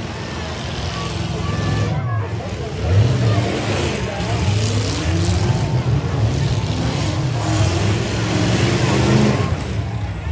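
Several demolition-derby pickup truck engines running and revving hard, their pitch rising and falling as they maneuver, with crowd voices underneath.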